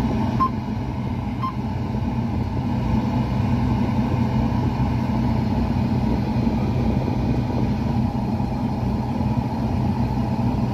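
Combine harvester running steadily, its engine heard from inside the closed cab as an even hum.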